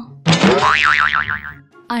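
Cartoon comedy sound effect: a sudden ringing tone whose pitch wobbles quickly up and down, lasting about a second and a half, a comic sting marking a character's shock.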